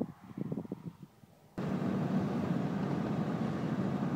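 Steady engine hum and road noise from a moving vehicle, cutting in abruptly about a second and a half in after a short quiet stretch of faint low knocks.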